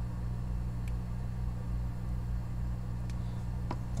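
Steady low electrical hum from the repair bench, with two faint clicks, one about a second in and one near the end, as small test clips are handled.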